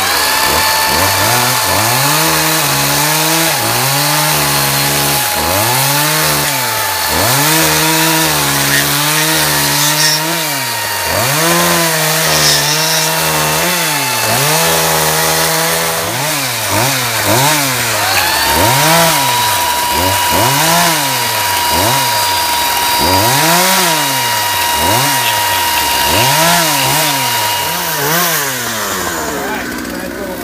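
Gas chainsaw revved up and down over and over, about once a second or so, as it cuts into a log stump, with the steady whine of a corded electric chainsaw running alongside.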